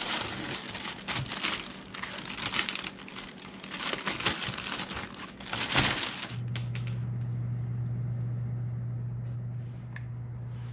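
Plastic bag crinkling and rustling as it is handled in gloved hands, irregular for about six seconds. Then it cuts to a steady low hum.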